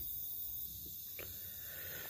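Faint steady background noise with one soft click about a second in; no distinct sound event.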